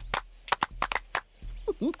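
A group of people clapping their hands in a quick rhythm, the clapping break of a children's action song, with claps coming in loose pairs a few times a second. A voice hums "mm-hmm" near the end.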